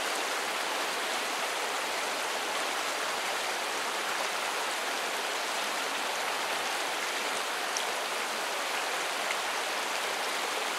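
Shallow, fast pocket water of an upland river rushing steadily over and between boulders: an even, unbroken wash of water.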